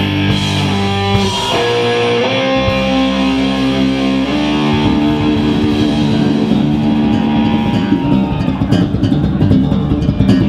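Live rock band playing: electric guitar holding sustained notes over bass guitar, with a drum kit and a djembe; the drumming grows busier about eight seconds in.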